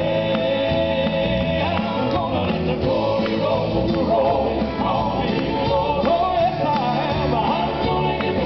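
Southern gospel male vocal quartet singing in harmony to a live band of electric guitar, drums and piano, with a steady beat.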